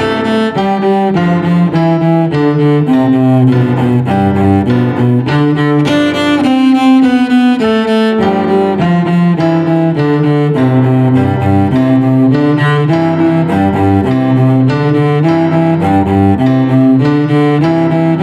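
Cello bowed slowly through a simple étude, each note held and changed in a steady rhythm, deliberately under tempo at about 51 beats a minute.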